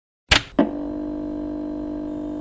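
A news outlet's logo sting: two sharp hits in quick succession, then a steady, held electronic chord.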